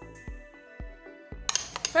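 Instrumental background music with a steady beat about twice a second, cutting off abruptly about one and a half seconds in. A metal spoon then clinks a few times against a glass bowl as a banana paste is stirred.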